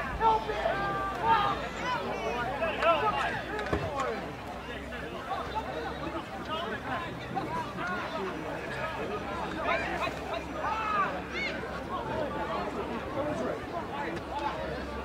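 Indistinct voices of rugby league players and sideline spectators calling out and chatting over one another, louder in the first few seconds.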